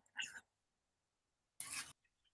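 Near silence on a video-call recording, broken by two brief faint sounds, one just after the start and one near the end.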